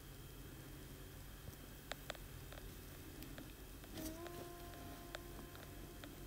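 Faint handling of satin fabric being pinned to a yoke on a table: rustling with a few small clicks from the pins, over a low steady hum. A faint held tone joins in about two thirds through.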